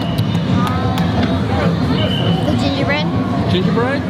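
Crowd of parade spectators chattering, many overlapping voices over a steady low rumble, with a couple of quick rising sounds near the end.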